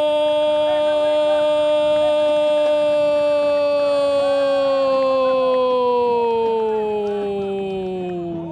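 A Brazilian football commentator's long drawn-out "Goool!" goal call: one loud, unbroken held note that sags gradually lower in pitch in the last few seconds, announcing that a goal has been scored.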